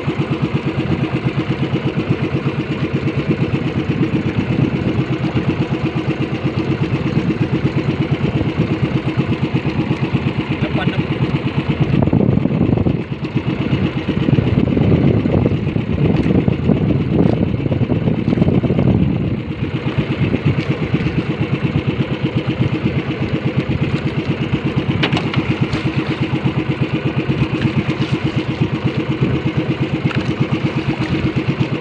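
Small outrigger boat's engine idling steadily with a rapid, even beat. It grows louder and rougher for several seconds in the middle, then settles back.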